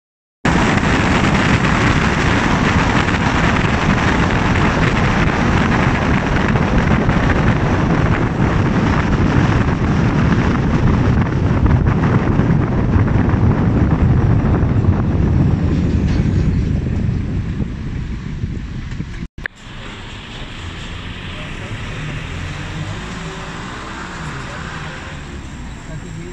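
Road and wind noise of a car driving at motorway speed: a steady rush that eases off over the last several seconds as the car slows to a stop at a toll-plaza barrier. The sound cuts out for an instant a little after the middle.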